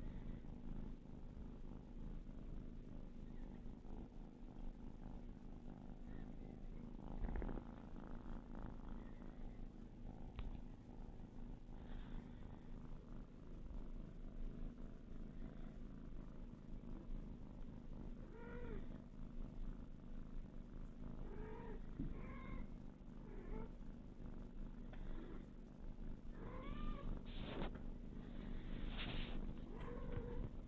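A cat purring steadily close by. In the second half come several short, high mews from kittens, the last ones loudest.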